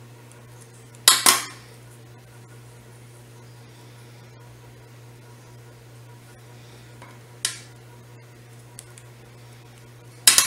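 Small metal tools clinking against a hard surface on a fly-tying bench: two sharp clinks close together about a second in, a lighter one past the middle, over a steady low hum.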